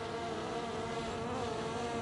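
DJI Air 2S quadcopter hovering, its propellers making a steady buzzing whine whose pitch wavers a little.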